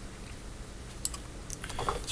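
Two faint computer clicks about half a second apart, over a low steady hum.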